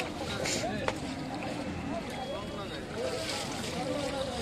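Several men's voices talking over one another in the background, with a single short knock about a second in.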